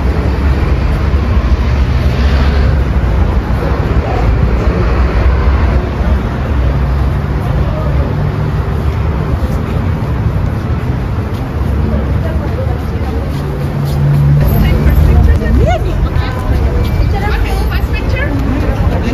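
Street noise: a continuous low rumble with vehicle engines humming past twice and indistinct voices in the background.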